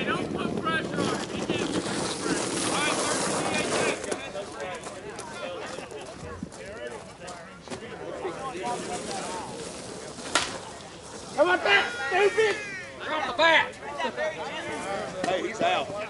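Slowpitch softball field: voices of players and spectators calling out, one sharp crack of a bat hitting the ball about ten seconds in, then louder shouting right after the hit.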